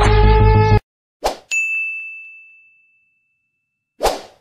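Intro music cuts off abruptly under a second in; then a short whoosh and a single bright ding sound effect that rings and fades over about a second and a half. Another short whoosh comes at the very end.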